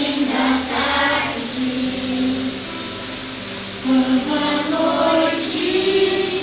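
A children's choir singing, with sustained sung notes. The voices drop away briefly about halfway through, then come back in strongly about four seconds in.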